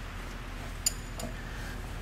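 A ratchet on the crankshaft bolt clicking as an engine is turned over by hand. There is one sharp metallic click a little under a second in, then a fainter one just after, over a faint low hum.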